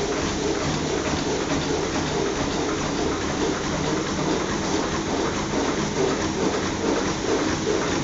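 Cosmo bottom-cutting plastic bag making machine running in production: a steady mechanical noise with a fast, even clatter repeating throughout.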